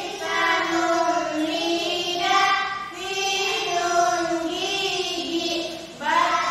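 Young female voices singing unaccompanied: a slow melody of long held notes that slide between pitches, in short phrases with brief breaths between them.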